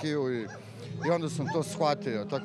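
A man speaking Serbian in an emotional street interview, over a steady low background hum.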